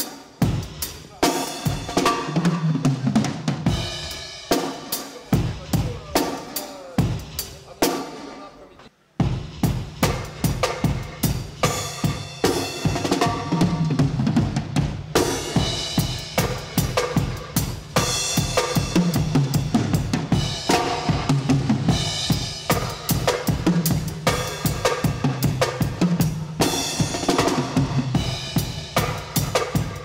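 Drum kit playing reggae grooves in a steady, even rhythm, with a brief break just before nine seconds in, after which the playing starts again and runs on.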